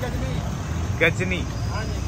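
Steady low rumble of an outdoor city market street, with a man's voice briefly saying a word about a second in.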